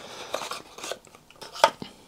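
A small plastic eye-drop bottle being picked up and handled on a desk: a few light clicks and taps, the sharpest about one and a half seconds in.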